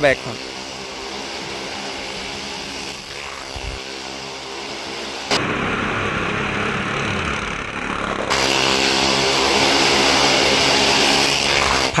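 Motorcycle engines running as riders circle the vertical wall of a well-of-death drum, growing louder in two steps, about five and about eight seconds in.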